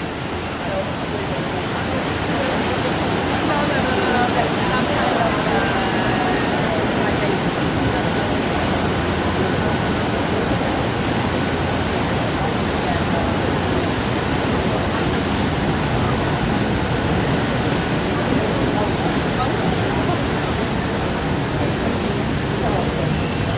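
Steady rushing of churned water and wind as a harbour ferry pulls away from its wharf, swelling over the first couple of seconds and then holding level, with indistinct voices underneath.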